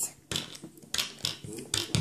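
A plastic toy doll being knocked against a tabletop and a small toy cookie: about half a dozen light, irregular taps and clicks, as if the doll is eating.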